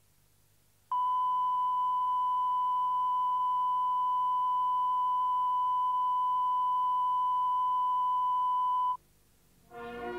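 Steady 1 kHz line-up test tone recorded with colour bars at the head of a VHS tape. It starts about a second in and cuts off abruptly about a second before the end, over a faint background hum. Music starts just before the end.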